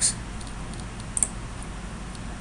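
Two quick computer mouse clicks about a second in, clicking Run to launch a program, over a steady background hiss and low hum.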